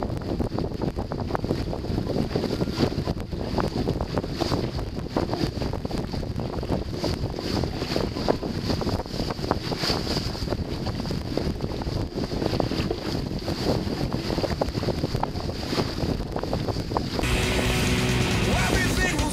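Wind buffeting the microphone and water rushing along the hull of a heeled racing keelboat sailing hard, with frequent splashes and knocks and a faint steady high whistle over it. Music cuts back in shortly before the end.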